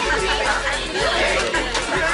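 Party music with a low bass under loud chatter from many people talking at once.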